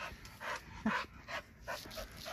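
A dog sniffing with its nose to the ground: a run of short, quick snuffling breaths, about two a second.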